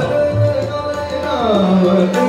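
Hindustani classical singing: a male voice accompanied by tabla and harmonium over a tanpura drone. About a second and a half in, the voice slides down in pitch, while the tabla's bass drum sounds low strokes beneath it.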